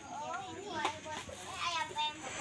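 Children's voices and people talking in the background, faint and high-pitched, with no one close by speaking.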